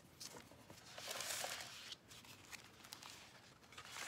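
Faint rustling of scrapbook paper sheets being handled and shifted on a cutting mat, with a louder rustle about a second in and a few light clicks.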